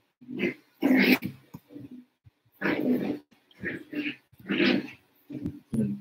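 A pet dog making short calls over and over, about ten in six seconds: a dog being a nuisance.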